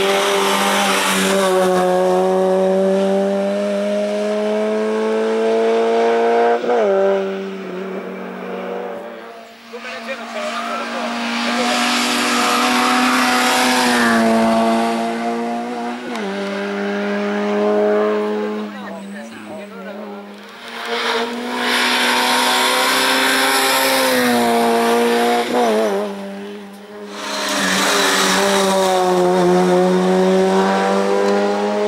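Peugeot 106 hillclimb car accelerating hard up the course. The engine note climbs in pitch and drops at each upshift, over several passes that swell and fade.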